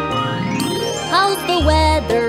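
Cartoon transition jingle over children's music: a tone glides upward through the first second, then short tones bend up and down, with a deep bass note near the end.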